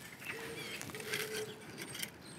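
Faint outdoor background of distant birds calling, including a low, steady call in two stretches.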